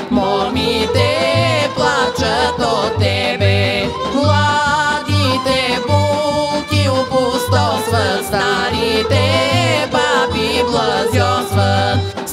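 A woman singing a Bulgarian folk song over instrumental backing with a steady bass beat about twice a second.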